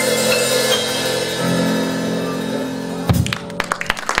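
A small jazz combo of electric guitar, drum kit, piano and upright bass holding the final chord of a tune and closing with one accented hit about three seconds in. Audience applause starts right after.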